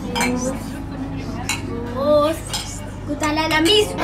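Drinking glasses clinking together in a toast, several sharp clinks amid table clatter, with voices in between.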